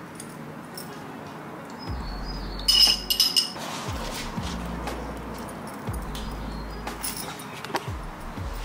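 A metal fork clinking against a glass jar of pickled jalapeños, a short cluster of ringing clinks loudest about three seconds in, with lighter clicks of cutlery and food handling around it.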